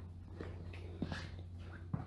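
Faint room tone: a low steady hum with a few soft, faint short sounds.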